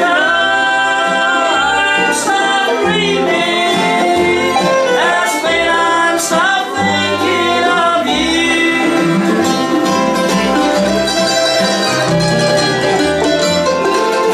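A bluegrass band playing an instrumental break. The fiddle is bowed with sliding notes over banjo, acoustic guitar and plucked upright bass notes.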